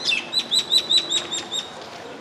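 A small bird calling: a rapid run of about a dozen short, high notes, each sliding downward, lasting about a second and a half and fading out near the end.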